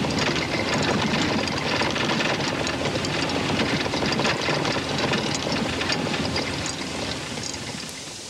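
Engine running and a vehicle rattling as it travels, heard from inside the passenger compartment.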